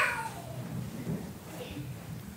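A small child's short, high-pitched cry that falls in pitch and fades away at the start, followed by low room murmur.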